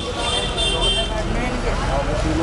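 Busy street-market background: several voices talking over a steady low rumble of traffic.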